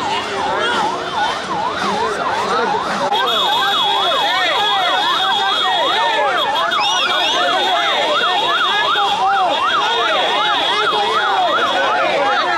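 Electronic yelp siren sweeping rapidly up and down, about three times a second, with further siren wails overlapping it, over the noise of a crowd.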